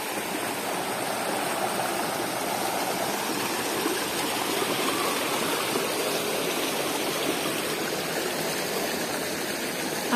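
Shallow rocky mountain stream running over small cascades, a steady, even rush of water close by.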